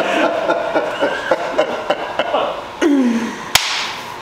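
Men laughing and chattering without clear words, then a single sharp hand clap about three and a half seconds in.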